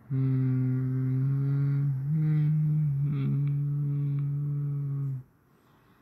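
A person humming in a low voice, holding one long note for about five seconds. The note steps up slightly partway through, drops back and then stops shortly before the end.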